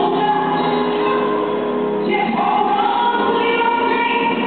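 Recorded gospel song with a choir singing long held notes over the accompaniment, the melody moving to a new phrase about halfway through.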